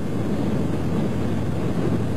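A steady engine drone mixed with wind noise, with no separate events.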